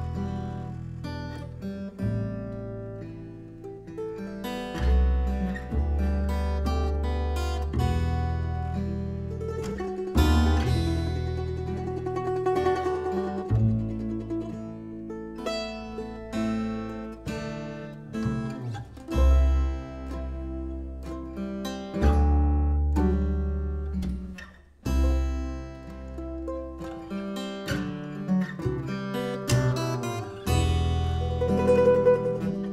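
Instrumental acoustic string trio: acoustic guitar, mandolin and plucked upright double bass playing together, with deep bass notes every few seconds under picked guitar and mandolin lines.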